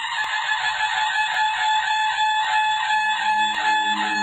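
Intro music: a steady high held note that fades in, with a soft tick about once a second and a low drone joining about three seconds in.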